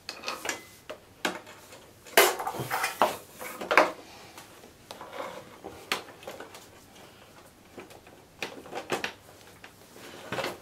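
Irregular light clinks and knocks as a brake cable is handled and fed under a scooter's metal chassis, knocking against the frame.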